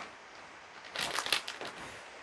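Brief rustling and crinkling of fabric about a second in, about half a second long, from bedding and clothes as two people shift their weight on a bed.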